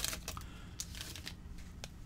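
A trading-card pack wrapper being torn open and crinkled, loudest right at the start, then faint rustling and small clicks as the cards are slid out of the pack.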